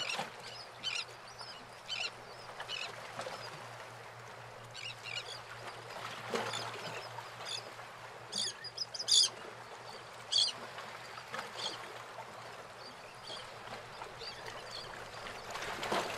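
Birds chirping in short, scattered calls, a few louder ones clustered about halfway through, over a faint steady wash like running water.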